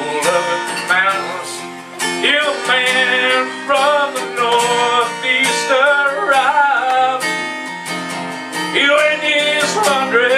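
Two acoustic guitars playing together in a live duo, strummed and picked in a country-folk style, with a wavering melody over them.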